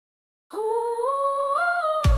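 About half a second of silence, then a voice humming one long held note that climbs in pitch in a few small steps, with no beat behind it: the opening of a song.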